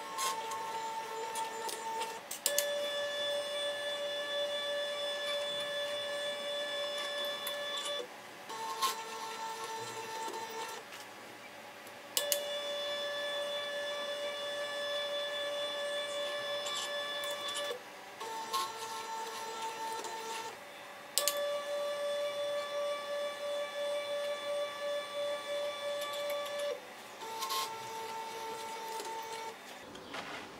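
NEMA 17 stepper motors of a wire-coil winding machine whining at a steady pitch while winding. They run in repeated cycles: about five seconds at one pitch, then a shorter run of about two seconds at a different pitch, with clicks and brief pauses between. The cycle goes round about three times.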